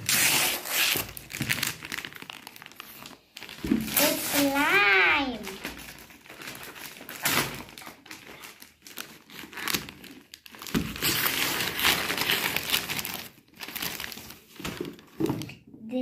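Gift wrapping paper crinkling and tearing in repeated rustling bursts as a present is unwrapped, the longest near the end. A drawn-out gliding vocal exclamation comes about four seconds in.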